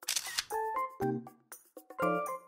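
A camera shutter click, then a few short pitched music notes about half a second apart with brief silent gaps between them.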